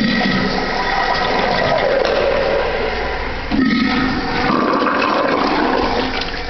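Urinal flushing: loud rushing water with a faint steady tone, and a fresh surge of flushing about three and a half seconds in.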